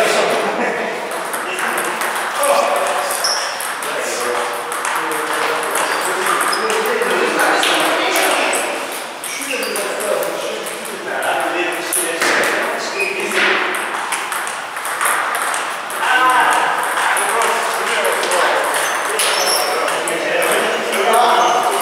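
A table tennis ball clicking now and then off paddles and the table, amid men's voices talking.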